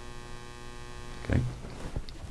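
Steady electrical hum with a stack of evenly spaced overtones, fading after a short spoken "okay" about a second in.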